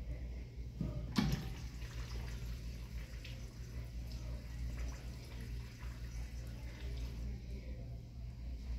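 Urinal flush valve on an American Standard Washbrook urinal being flushed: a sharp click about a second in, then water rushing through the bowl for about six seconds before it shuts off. A steady low hum runs underneath.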